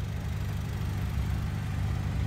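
Steady low rumble of an idling car engine.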